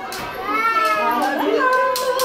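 Young children's voices chattering and calling out, several at once, high-pitched.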